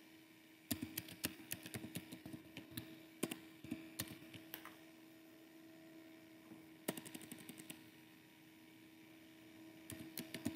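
Computer keyboard keys being typed in two runs, a long quick run in the first half and a short one a little after the middle, over a faint steady electrical hum.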